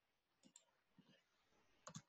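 A few faint computer keyboard keystrokes over near silence: soft single clicks spaced out, with a pair near the end.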